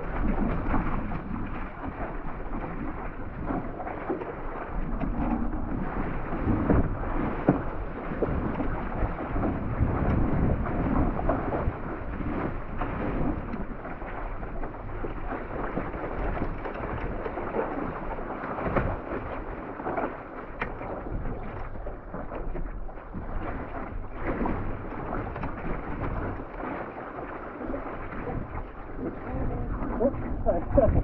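Water rushing and splashing along the hull of a one-person outrigger canoe running through open-ocean swells, in irregular surges, with a low wind rumble on the microphone.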